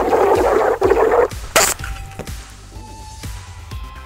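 Loud hiss of CO2 gas rushing through a Schrader-valve stopper into a water-charged soda bottle for about a second and a half, then a sharp pop about a second and a half in as the bottle blows off the stopper and launches. Quiet background music with held notes follows.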